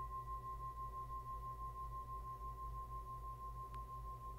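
Brass singing bowl ringing with one steady, sustained tone that wavers gently in loudness a few times a second.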